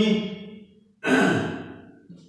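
A man's audible sigh about a second in: a breathy exhale that starts suddenly, drops in pitch and fades away over about a second.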